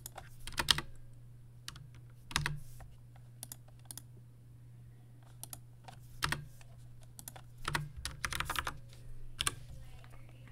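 Computer keyboard keystrokes, tapped in short irregular clusters with pauses between them, over a steady low hum.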